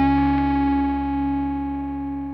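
A distorted electric guitar chord held and ringing out as the song's final chord, slowly fading away.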